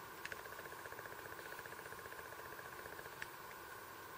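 Faint, light clicks from the plastic and metal clip of clip-on flip-up sunglasses being handled on a pair of eyeglasses, a couple of small ticks against a steady faint whirring hum.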